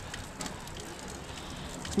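Water from a stone fountain trickling and splashing into its basin: a steady splattering hiss.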